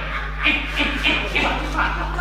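A man's voice making short, gruff, repeated grunting sounds, about three a second, as part of a Popeye impression.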